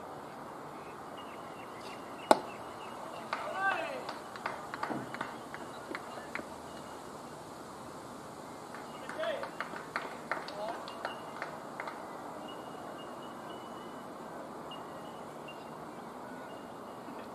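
One sharp crack of a cricket bat hitting the ball about two seconds in, then players' shouts and calls across the field in two spells, with short sharp knocks among them.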